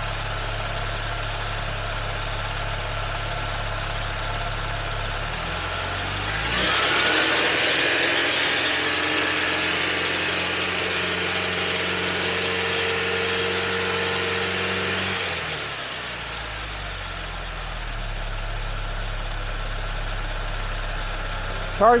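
Saab car engine idling, then revved up about six seconds in and held at a raised speed, about 2,000 RPM, for some nine seconds before dropping back to idle. The raised speed is for a charging-system test, with the alternator under the tester's load; the test reads charging normal.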